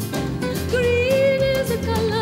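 A woman singing a long held note with vibrato over a steady acoustic accompaniment.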